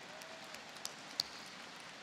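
Faint audience applause, an even patter with a couple of sharper single claps about a second in.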